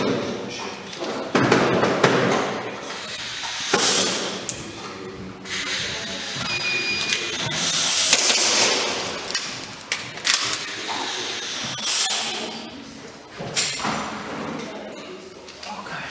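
Airsoft pistol being shot at plate targets in a large hall: a string of sharp cracks and knocks that echo round the room, with a short electronic beep about seven seconds in, just before the shooting.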